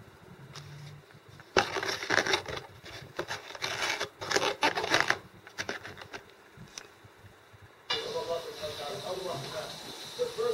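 A foam takeout clamshell being handled and closed by hand: a few seconds of rubbing and scraping foam with sharp clicks, starting about a second and a half in. Near the end the sound changes to a steady hiss with faint voices behind it.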